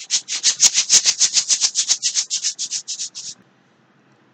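A rhythmic maraca-like shaking, about seven hissy strokes a second, that fades and stops a little past three seconds in.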